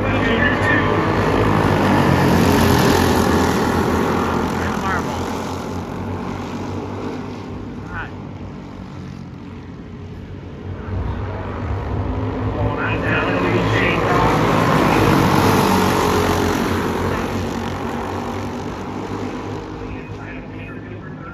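A pack of racing go-karts' small engines running hard together, loud as they pass, fading near the middle, then building again to a second peak as they come round and fading once more.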